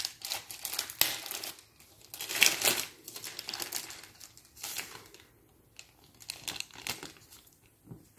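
Pink gift-wrapping paper crinkling and rustling in irregular bursts as a present is unwrapped by hand, loudest in the first three seconds.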